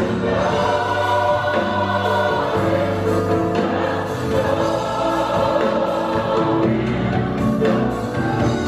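Gospel mass choir singing full-voiced with band accompaniment of electric guitar, keyboard and bass, the bass holding long low notes under the voices.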